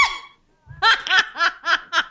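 A woman laughing: a high rising squeal at the start, a brief pause, then a run of quick laugh pulses.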